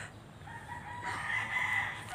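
A rooster crowing once: one long call that starts about half a second in and swells before fading near the end.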